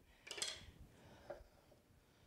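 Mostly quiet, with a brief, soft clink or scrape of dishware about half a second in and a faint tap a little after a second: a ceramic pasta bowl being handled on a stone countertop.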